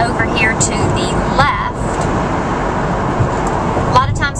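Steady road and engine noise inside the cabin of a car moving at highway speed.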